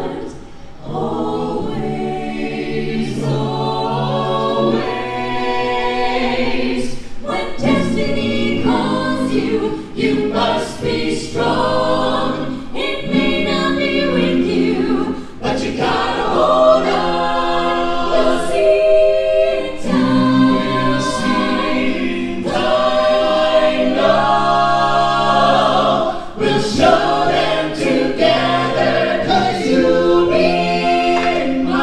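An a cappella vocal ensemble of men and women singing in close harmony, with no instruments, amplified through a stage PA system.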